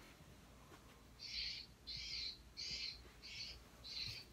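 A bird calling: a regular series of short, high chirps, about three every two seconds, starting about a second in.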